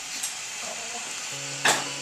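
A steady hiss, with one sharp click shortly before the end and a low steady hum coming in over the second half.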